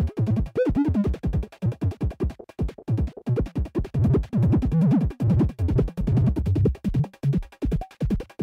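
Glitchy electronic music: random sounds from a phone sound app run through a Zoom G3 multi-effects unit, coming as stuttering, chopped, bass-heavy pulses that cut on and off rapidly. A short pitched blip swoops up and back down about half a second in.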